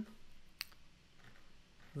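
A single short, sharp click about half a second in, over quiet room tone, typical of a computer mouse or key being pressed while editing code.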